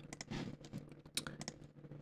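Several soft, irregular clicks from a computer mouse and keyboard as the DAW is worked.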